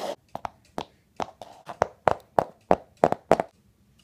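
Clip-clop hoofbeats of horses moving off: a string of sharp taps, about three a second, getting louder toward the end.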